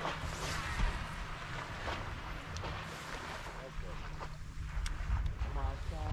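Wind and water sounds aboard a bass boat on open water, with a low steady hum underneath and a few short clicks and knocks from the gear on deck.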